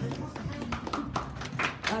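An audience applauding, with separate hand claps coming in quick irregular succession and voices talking among them.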